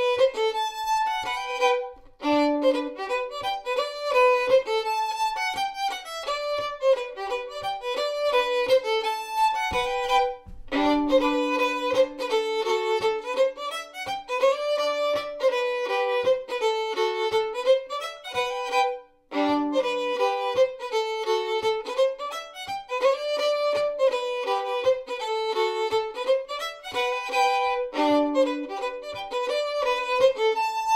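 Solo fiddle, bowed, playing a Swedish folk mazurka. The melody runs in phrases, with brief breaks about 2, 10 and 19 seconds in.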